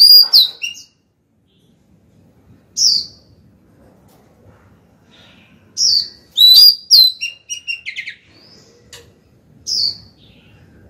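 Female oriental magpie-robin singing: loud whistled phrases of gliding notes in bursts, one at the start, a short note about three seconds in, and a longer run of whistles ending in quick repeated notes from about six to eight seconds, with another whistle at the very end.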